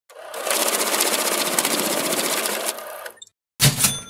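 Channel intro sound effect: a fast, dense mechanical rattle lasting about three seconds that cuts off, then after a short gap a sharp hit with a metallic ringing tone that fades.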